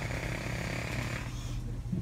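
A small engine running steadily over a low hum. Its higher whine drops away about a second and a half in.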